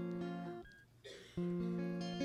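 Chords strummed on an acoustic stringed instrument. A chord struck just before rings and fades out about halfway through, then a new chord is strummed near the end and left ringing.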